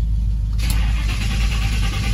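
Big-block V8 cold-starting after sitting for a month: the engine catches about half a second in and runs on with a heavy, low rumble.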